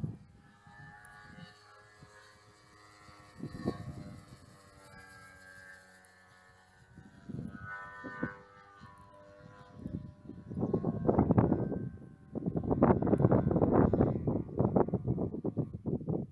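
Distant DA-100 two-stroke gas engine with canister exhaust on a 2.6 m Extra 330 RC aerobatic plane: a faint drone whose pitch rises and falls with throttle and manoeuvres. From about ten seconds in, loud gusts of wind on the microphone take over.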